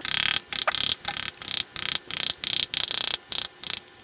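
Wooden spoon beating the back of a halved pomegranate held over a glass bowl, a quick steady run of knocks about three to four a second, fairly hard. The blows knock the seeds loose from the skin into the bowl.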